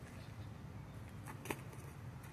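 Basketball handling on a gravel driveway: a single soft knock about one and a half seconds in, over a faint low hum.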